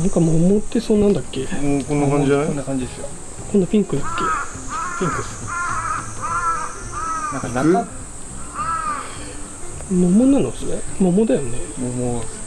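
A crow cawing, a run of about eight calls at roughly two a second, over a steady high-pitched insect drone.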